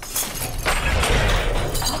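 A crash-like breaking sound effect. It is a noisy burst with a low rumble that swells to its loudest about a second in and fades near the end.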